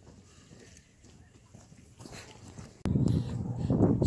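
Faint steps and rustling, then about three seconds in a sudden loud low rumble of wind buffeting the phone's microphone.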